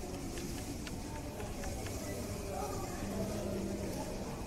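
Faint background chatter of visitors over a steady low hum, with a few light clicks in the first two seconds.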